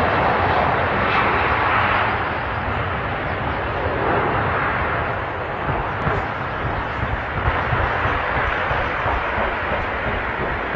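Boeing 757 jet engines at takeoff power, a loud steady rushing noise. In the second half come irregular pops as one engine surges and flames after a bird strike.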